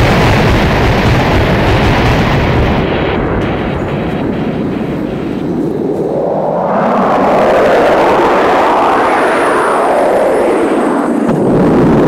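Loud rumbling, booming sound effect played over a theatre's speakers. A dense roar swells into a rising-and-falling whoosh in the second half, then the low rumble cuts off suddenly near the end.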